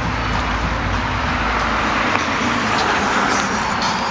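A car driving past on the street, its tyre and engine noise swelling to a peak in the second half and then easing off.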